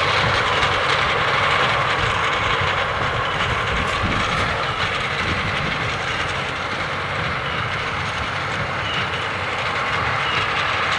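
Fendt 936 tractor working under load as it pulls a CLAAS Quadrant 5300 big square baler through straw: a steady engine drone mixed with the baler's continuous mechanical clatter and low, irregular knocking.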